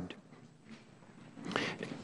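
Near silence: room tone in a pause between spoken sentences, with a faint inhale near the end.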